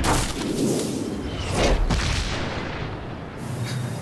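Cinematic boom sound effect: a deep low rumble lasting about three seconds, with a brief whoosh about one and a half seconds in.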